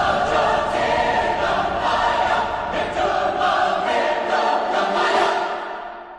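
Choral singing: a group of voices holding long, sustained notes, fading out near the end.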